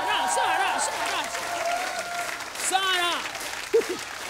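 Studio audience applauding, with voices calling out over the clapping.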